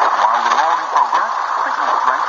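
A man's voice narrating in English, a shortwave broadcast on 6005 kHz played through the speaker of a Degen DE1103 portable receiver.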